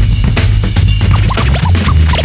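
Hip-hop music with a heavy bass line and drum hits, overlaid with turntable scratching: short, quick squiggles of pitch.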